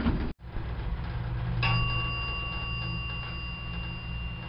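Elevator sound effect: a steady low rumble of a moving lift car, joined about a second and a half in by a steady high hum. A short earlier sound cuts off abruptly just before it.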